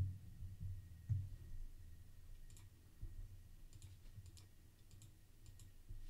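Faint, scattered clicks of a computer mouse and keyboard: a couple of soft low thumps in the first second or so, then a few light clicks.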